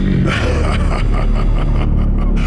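Sci-fi soundtrack effects: a deep steady rumble under several short hissing electronic bursts.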